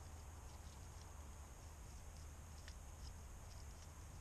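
Near silence: a steady faint low rumble of outdoor background, with a couple of faint ticks.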